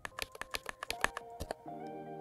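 Computer keyboard keys tapped in a quick run, about seven or eight presses a second, working a command-line selection menu. About a second and a half in, soft background music with a held chord comes in.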